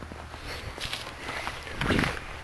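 Footsteps of a person walking on snow-covered grass, a few irregular steps.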